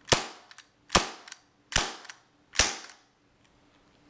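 KWC Smith & Wesson M&P 40 CO2 non-blowback airsoft pistol firing four shots a little under a second apart. Each is a sharp pop of released gas with a short tail, with no slide cycling between shots.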